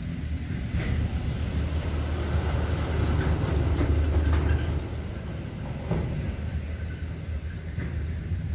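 Heavy gravel-hauling dump truck driving past, its low engine rumble building to a peak about halfway through and then fading, with a few brief knocks.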